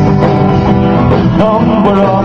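Live band music: a man singing into a microphone while strumming an amplified acoustic guitar, with the band playing along.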